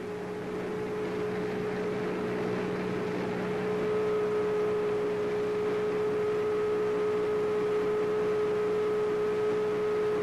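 Steady machine hum with a constant tone over a hiss, with a faint higher tone joining about four seconds in, consistent with the concrete hoist running.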